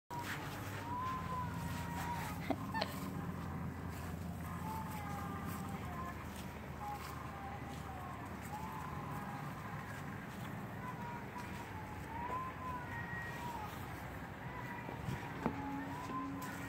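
A faint, high voice singing a slow, wavering tune: long held notes that dip and rise again, broken by pauses, over a low steady background hum. Two sharp clicks come about two and a half seconds in.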